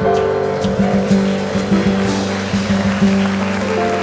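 Jazz trio playing: acoustic double bass walking low notes under a drum kit with cymbals and piano.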